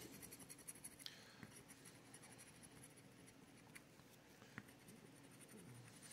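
Faint scraping of a scratcher across the coating of a paper scratch-off lottery ticket, with a few light clicks.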